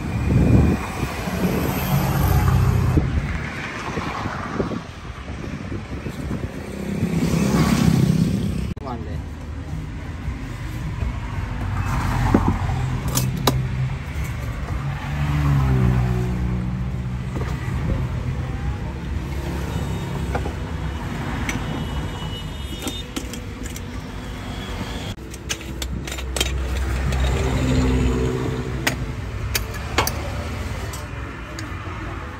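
Road traffic passing close by: a steady low rumble, with several vehicles rising and fading one after another. Now and then there are light clinks.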